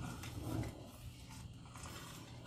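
A metal spoon stirring a thickening flour-and-milk soup in a stainless steel saucepan, faint, over a low steady hum.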